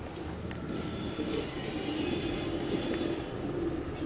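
Freight train rolling through a rail yard, heard from inside a car, with a steady low rumble. A thin, high-pitched squeal, typical of steel wheels on the rail, rises about a second in and fades a little after three seconds.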